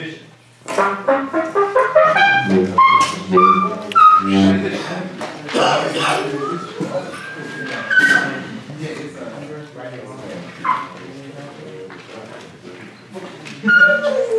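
A trumpet plays short jazz phrases, with a run of rising notes in the first few seconds and a rising slide near the middle. Talk comes in between the phrases.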